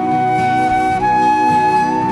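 Instrumental break in a slow Irish ballad: a flute-like wind instrument plays the melody in long held notes, stepping up to a higher note about a second in, over a sustained chordal accompaniment.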